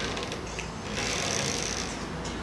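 Rustling, scratchy noise close to the microphone, with a few light clicks near the start and a denser, hiss-like stretch from about a second in.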